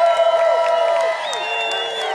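A large stadium crowd cheering and screaming, with many voices holding high yells at once over a wash of crowd noise.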